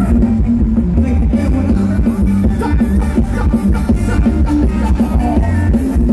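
Live band playing Thai ramwong dance music, loud, with a steady drum beat and heavy bass.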